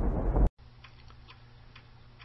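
A loud low rumble cuts off abruptly about half a second in. After it, in a quiet room, a clock ticks faintly and steadily over a low electrical hum.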